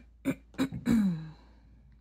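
A woman clearing her throat: four short bursts in about a second and a half, the last drawn out and falling in pitch.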